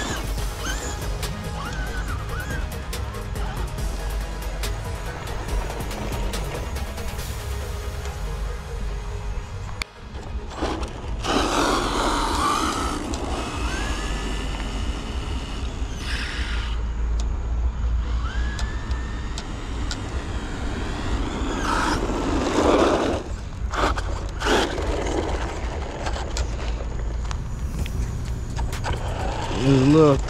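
Background music, with a short break about ten seconds in.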